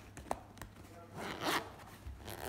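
Zipper on a fabric makeup bag being pulled open by hand in short rasps, the longest about one and a half seconds in.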